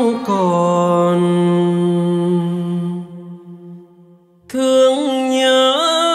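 Live band music: a held chord rings on and fades away, a second of near silence follows, then a new sustained chord comes in about four and a half seconds in and steps up in pitch near the end.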